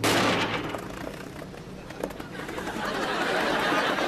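A plane ditching into the sea: a sudden loud crash that dies away over about a second, then a rushing noise that swells near the end.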